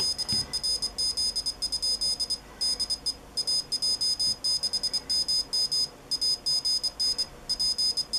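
Piezo buzzer on a home-built electronic Morse keyer sending the message stored under memory button two. A single high-pitched beep is keyed on and off in dots and dashes at an even sending speed.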